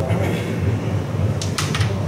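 A few sharp clicks of a carrom striker and coins being handled on the board, bunched together about one and a half seconds in, over a steady low background hum.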